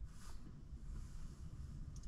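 Faint scratching of a ballpoint pen on a paper notepad in the first half second, over the quiet, low steady rumble of a car cabin.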